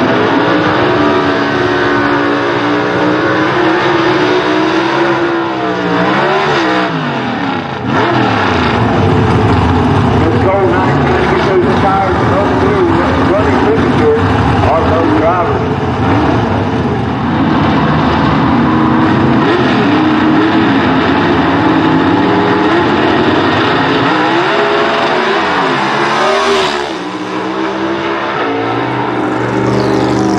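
V8 engines of vintage gasser drag cars running loud and hard on a drag strip. The engine pitch swoops down and climbs again about six seconds in and once more near the end.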